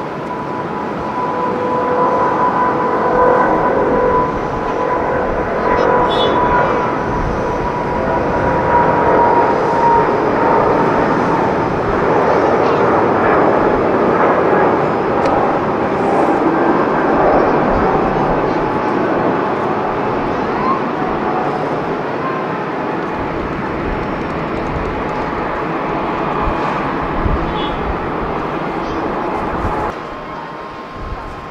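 Boeing 777 airliner's twin turbofan engines at takeoff thrust as the jet rolls down the runway and lifts off: a loud, steady jet roar that swells over the first few seconds. A fan whine rides on top through about the first ten seconds, and the roar eases a little in the last third.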